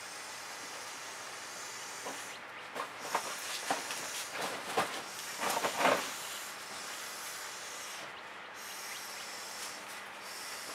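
Dry leaves crunching and rustling under dogs running about, in short scratchy bursts that are loudest about five to six seconds in, over a steady hiss.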